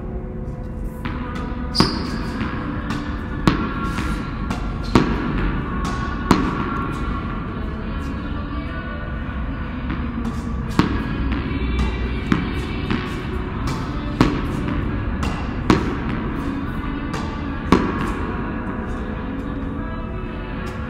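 Background music plays throughout, cut by sharp hits of a ball against a racket and a wall about every one and a half to two seconds, with fainter bounces between them.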